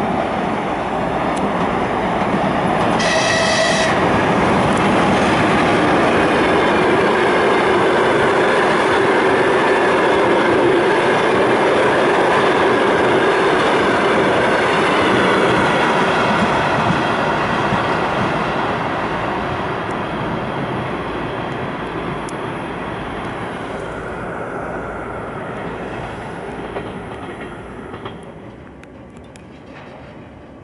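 A long-distance passenger train hauled by a ChS2K electric locomotive passes through a station. It gives a short horn blast about three seconds in. The locomotive and coaches run loudly past on the rails, then the sound dies away over the last ten seconds.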